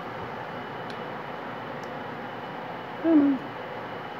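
Faint clicks of pliers snipping the MIG welding wire at the gun's tip, over a steady background hiss. About three seconds in comes a brief, falling hummed 'hm' from a person.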